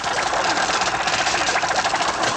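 Animated-film sound effect of a fast, steady mechanical chatter, like a small motor or sewing machine running, while an insect saboteur tangles a flying time machine's control wires.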